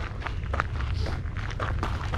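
Footsteps crunching on a gravel trail, a few steps a second, over a steady low rumble.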